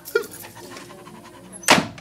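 Dog panting sound effect in a radio-theatre performance, with one short loud noise near the end.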